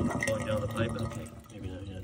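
Mostly a man talking, with water faintly running behind him as the sand-filter bucket fills; the talk fades out about a second in, leaving the quieter water.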